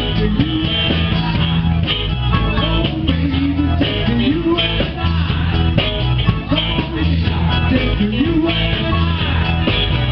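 Live rock-and-roll band playing loudly: electric guitar with bending notes over bass and drums at a steady beat.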